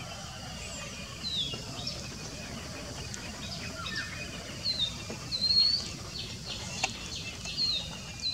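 Small birds chirping now and then: about half a dozen short, high calls that mostly slide downward in pitch, over a steady low background rumble.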